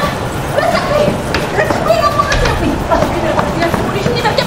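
A woman's voice exclaiming, the words indistinct.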